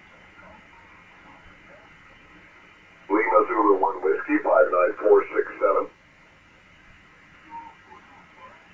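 Hiss of the 20-metre band through an ICOM IC-7851 receiving single-sideband, cut off above about 3 kHz. About three seconds in, a station's voice comes through for about three seconds, thin and unclear, then the hiss returns.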